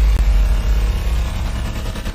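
Deep, loud bass rumble of a news-show intro sound effect, with a hiss of noise over it, easing slightly in level.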